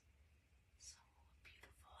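Near silence in a pause between a woman's sentences, with a faint short breath a little under a second in and faint mouth sounds just before she speaks again.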